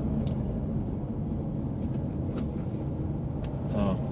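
Steady rumble of a car driving, engine and road noise heard from inside the cabin, with a few faint clicks.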